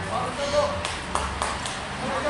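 Shouting voices of players and spectators at an outdoor football match, with four sharp clicks in quick succession about a second in, over a steady low rumble.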